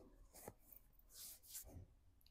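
Near silence, with a few faint soft rustles of hands and clothing as the palms are brought together at the chest.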